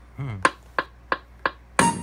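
Beat playing from an Akai MPC Live: the synth chords break off for a moment, leaving a short voice-like sound and then four light clicks about three a second, before the chord stabs come back near the end.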